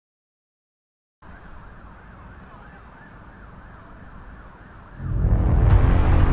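A siren effect wailing up and down about twice a second, kept low under the opening of a reggae-pop track. A loud bass-heavy beat comes in about five seconds in.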